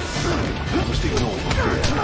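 Movie fight-scene soundtrack: a rapid string of crashes and hard hits, about five in two seconds, over dramatic music and voices.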